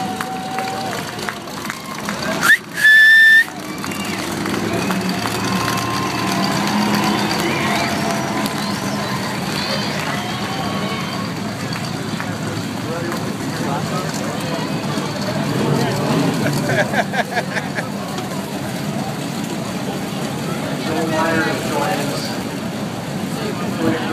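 Race car engines running as the cars circle a dirt oval, with crowd chatter and a voice over it. A short, very loud high-pitched blast comes about three seconds in.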